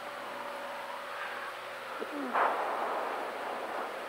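Single-engine Cessna's piston engine and propeller running steadily, a drone with a few steady hum tones heard inside the cockpit. A short low falling sound comes about two seconds in.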